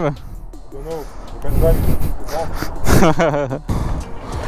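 Indistinct voices in short bursts, with music underneath.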